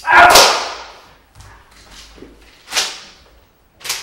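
A loud sharp crack standing in for the gunshot of a staged execution, ringing out for about half a second. Two shorter, quieter cracks follow, one near the three-second mark and one near the end.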